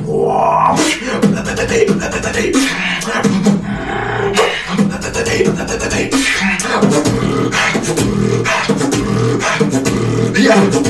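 Solo beatboxer performing: rapid mouth-made kick, snare and click sounds over sustained hummed low tones, with no words.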